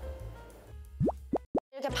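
Edited-in cartoon sound effect: three quick rising 'bloop' pitch glides in quick succession in the second half, the last one cut off abruptly, with faint background music.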